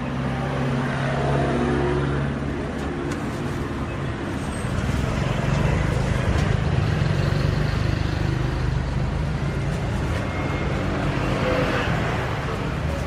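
Road traffic: vehicle engines running on the street close by, a continuous low hum that grows louder about halfway through as traffic passes.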